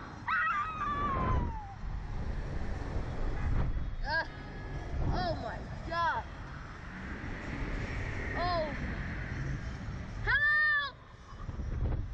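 Short, high-pitched shrieks and yelps from riders on a Slingshot reverse-bungee ride, a string of separate cries with the loudest and longest near the end, over a steady rush of wind buffeting the microphone.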